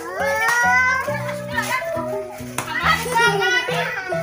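Background music with a bass line stepping from note to note about twice a second, with young children's voices calling and squealing over it.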